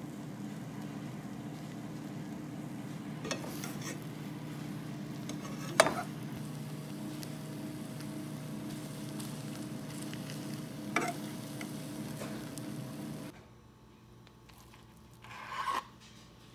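Egg omelette cooking in a nonstick frying pan: faint sizzling over a steady low hum, with a few sharp knocks as it is worked and rolled, the loudest about six seconds in. The hum stops about thirteen seconds in, and a brief clatter follows near the end.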